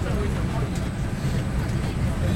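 MBTA Red Line subway train running at speed, heard from inside the car: a steady low rumble of the wheels on the track.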